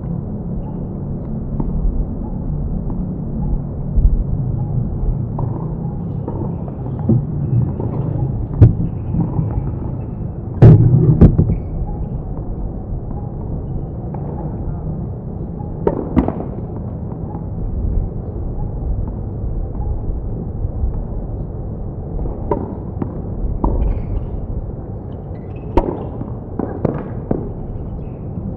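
Tennis balls struck by rackets on an outdoor hard court: scattered sharp knocks, the loudest about eleven seconds in, with a cluster of quicker knocks near the end. Under them runs a steady low rumble.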